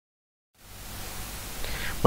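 Dead silence for about half a second, then a faint, even hiss of studio microphone and room noise that creeps slightly louder toward the end.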